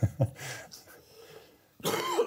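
The tail of a short laugh at the start, then a sudden cough near the end.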